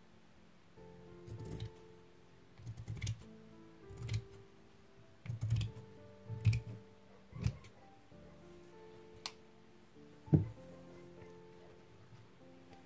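Fabric scissors cutting through a sheet's seam allowance in a series of short snips, about eight in all, with one louder knock shortly before the end. Soft background music plays underneath.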